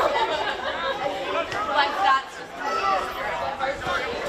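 Indistinct chatter of several people's voices, with no words clear enough to make out.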